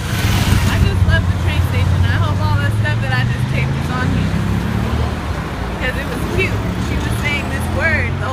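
Road traffic on a busy street: a steady low engine drone from passing vehicles, with voices talking over it.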